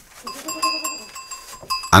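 Small metal bells on goats' collars clinking and ringing, struck many times in quick, irregular succession as the goats jostle.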